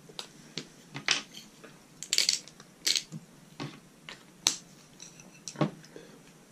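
Salt and pepper being shaken out over a plate of meat: a dozen or so irregular sharp clicks and short gritty rattles, the longest a little after two seconds in.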